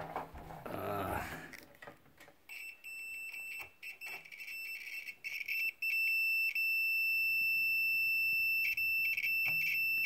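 Digital multimeter's continuity beeper sounding a steady high beep, broken up at first and then held almost without a break from about halfway, as its probes bridge a microwave oven's high-voltage diode. The meter beeps whichever way the diode is connected, which the owner takes for a shorted diode.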